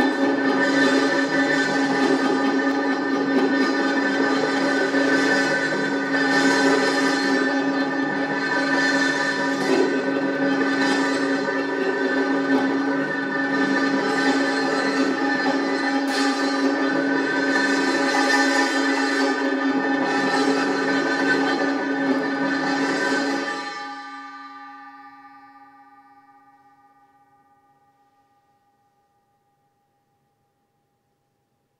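Small metal gong laid on a snare drum head, rolled continuously with a soft felt mallet: a dense, sustained metallic ringing with many tones, swelling about once a second. About 23 seconds in the playing stops and the remaining tones fade out over several seconds.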